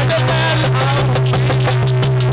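Live Indian folk devotional music: a man singing through a PA microphone to harmonium and hand-drum accompaniment, over a loud steady low drone.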